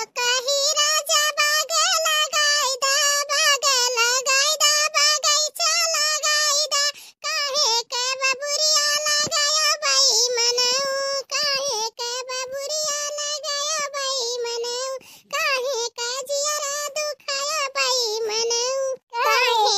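A high-pitched, artificially pitched-up cartoon voice singing in long held phrases, with short breaks between them.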